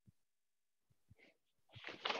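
Near silence: the room tone of a video call, with a few faint clicks. Near the end a breathy noise begins to swell.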